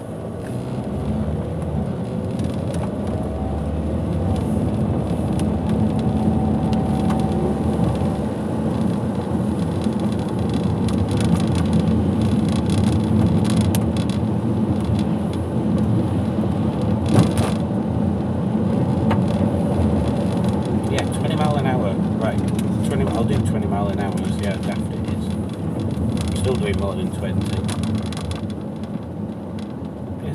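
Car running, heard from inside the cabin on a wet road: engine and tyre noise swell over the first few seconds as the car pulls away from a stop, then hold steady. A single sharp click sounds about halfway through.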